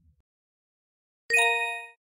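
A single bell-like ding sound effect, starting suddenly about a second in and ringing out for about half a second.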